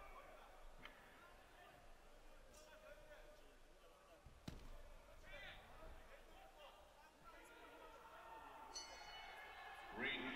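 Near silence: faint boxing-arena room tone with distant voices and a few soft thuds, the sharpest about four and a half seconds in.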